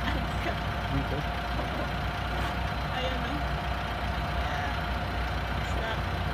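A motor running steadily: a constant low hum with a faint, steady higher whine over it.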